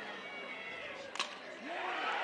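Low crowd murmur in a ballpark, with one sharp crack of a softball bat hitting the pitch a little over a second in.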